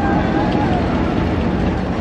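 Wooden roller coaster train running along its track, a steady rumble of wheels on the wooden structure, with voices mixed in.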